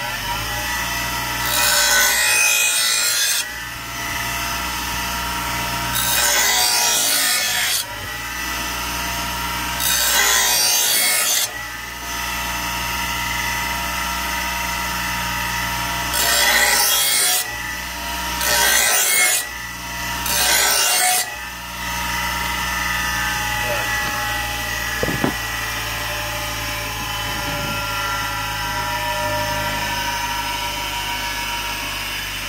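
Bench grinder running with a steady hum while a steel mower blade is pressed against the grinding wheel to sharpen its edge: six harsh grinding passes of one to two seconds each, the last three close together, then the grinder runs on alone.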